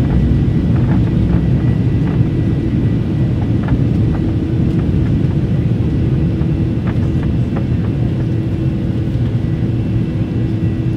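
Airliner cabin noise: the steady roar of the jet engines and airflow heard from inside the passenger cabin, with a faint steady hum and a few faint clicks.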